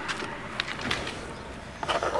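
Faint rustling and handling noise as someone climbs into a car's driver's seat, with a few short scuffs near the end.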